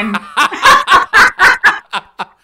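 A person laughing in a quick run of about seven short, rhythmic laugh pulses that stop just before the end.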